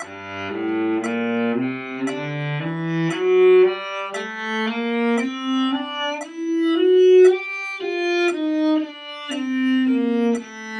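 Cello playing a slurred G melodic minor scale, several notes to each bow, one step about every half second. It climbs for about seven seconds, then starts back down.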